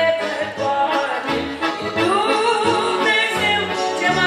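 A woman singing a Romanian hymn with a wavering vibrato, accompanied by an electronic keyboard playing chords over repeated low bass notes.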